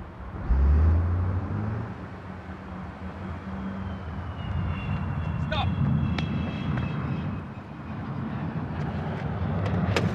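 Ford Granada 2.0 GL's four-cylinder engine revving hard as the car pulls away under full throttle, then running on steadily. A faint high whine sounds behind it through the middle.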